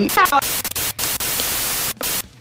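Loud hissing static like a radio or TV tuned between stations, with a short garbled snatch of a voice in the first half-second. The hiss breaks off briefly a few times.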